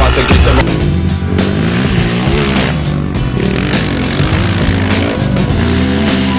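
Honda TRX450R sport quad's single-cylinder four-stroke engine revving, its pitch rising and falling repeatedly, with music at the very start.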